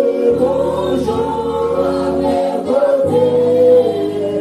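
A church congregation singing a slow worship song with a worship leader on a microphone. The long held notes sit over a steady low accompaniment that changes chord every second or two.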